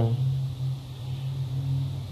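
A steady low hum or rumble of background noise, with no other event.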